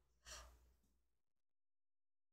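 Near silence: one brief, faint breath about a quarter second in, then complete dead silence from just over a second in, as if the audio line is gated off.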